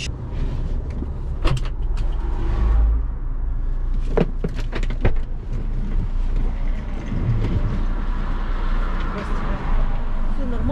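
A steady low rumble inside a stopped Chery Tiggo 7 Pro, with three sharp knocks about a second and a half, four and five seconds in, as luggage is loaded through the open tailgate.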